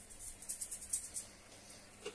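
Salt sprinkled by hand onto raw chicken legs and potatoes in a glass roasting dish: a quick run of faint, high ticks lasting about a second and stopping about halfway through.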